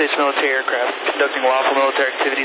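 A US Air Force radio broadcast: a voice over a narrow-band radio channel identifying itself as the US Air Force and stating that it is in international airspace.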